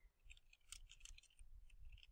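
Faint, irregular clicks of computer keyboard keystrokes as text is typed.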